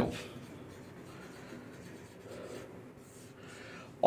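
Faint sound of a marker pen writing on a white board.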